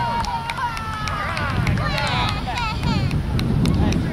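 Spectators shouting and cheering, several voices overlapping with no clear words, some high and shrill about halfway through, over wind rumbling on the microphone.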